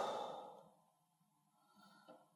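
A man's breathy sigh trailing off the end of a drawn-out "oh," fading out within about half a second, then a pause of near silence.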